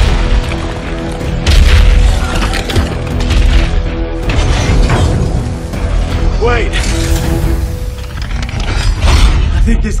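Film action sound mix: a giant robot's mechanical whirring and clanking over a music score. Heavy booms come about a second and a half in and again near the end.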